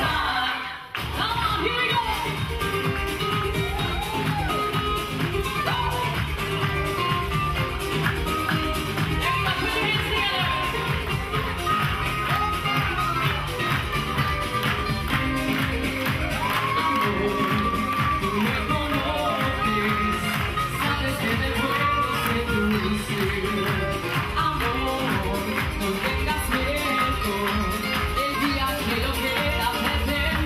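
Live salsa band playing with a singer over a steady dance beat; the sound drops out briefly about a second in, then the music carries on and a voice calls out "Here we go!".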